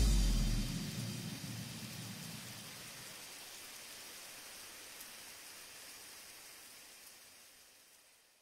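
The tail of a lofi track: the last low notes die away within the first second, leaving a soft rain-like hiss that fades steadily to near silence about seven seconds in.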